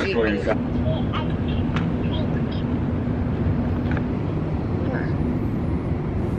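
Laughter and talk trailing off, then a steady low rumble with a faint steady hum that fades out partway through.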